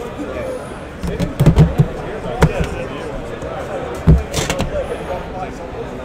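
Knocks and thuds of trading-card tins and boxes being handled and set down on a table: a quick run of knocks about a second in, another about two and a half seconds in, and a heavier thump about four seconds in, followed by a brief rustle.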